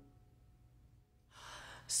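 A quiet pause in a Korean art-song recording. An audible breath intake by the singer comes about a second and a half in, then a short hiss of an 's' as the voice begins again at the very end.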